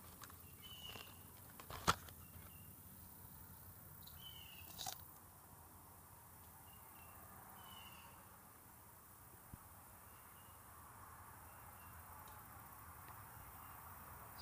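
Quiet outdoor ambience with a few faint, short high chirps from a distant bird. One sharp click about two seconds in and a softer knock near five seconds.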